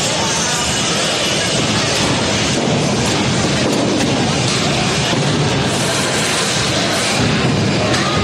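Combat robots fighting in an arena: a loud, steady din of drive motors and hammer blows on armour, with crowd noise behind.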